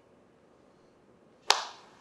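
A single sharp clap of the hands about one and a half seconds in, with a short echo trailing off.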